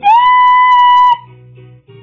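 A loud, high howl held on one note for about a second, sliding up into it at the start and then breaking off, leaving quiet Christmas pop music playing in the background.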